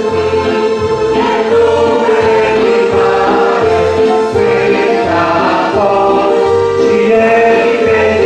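A choir singing a Christian hymn, the voices holding long steady notes.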